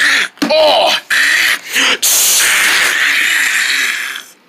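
A person's voice making cartoon fight noises: two short squawk-like cries that bend in pitch, then a loud, long hissing rush of breath lasting about two seconds.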